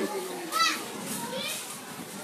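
Children's voices and crowd chatter, with a child's short high-pitched cry about half a second in and another brief high call a second later.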